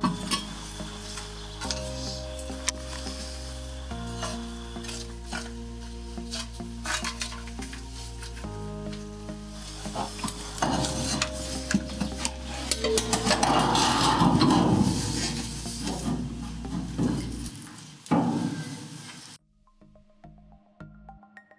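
Metal scraper rasping and scratching over the steel burner mounting plate of an oil-fired dryer furnace, scraping off old gasket residue before a new gasket goes on. The scraping grows louder and more vigorous in the second half.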